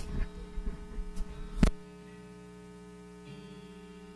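A handheld microphone knocked and bumped a few times over the sound system, its low rumble cutting off abruptly after about a second and a half. Then a steady electrical hum from the PA, with a soft sustained keyboard chord coming in near the end.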